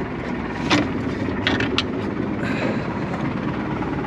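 A small boat's engine running at low speed, with a few sharp knocks and clicks about a second in and in the middle.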